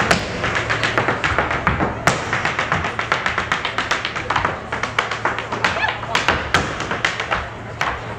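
Irish dance hard shoes beating out rapid taps and heavier stamps on a stage floor, with music playing underneath.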